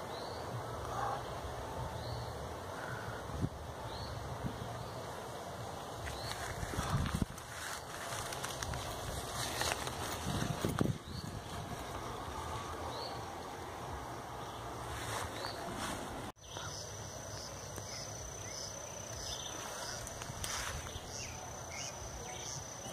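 Grassland wildlife ambience: a short rising chirp repeating every second or two, then a steady high-pitched insect buzz that starts at a cut about three-quarters of the way through, over a constant low rumble.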